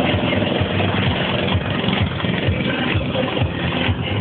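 Go-kart engine running steadily, with a low rhythmic pulsing.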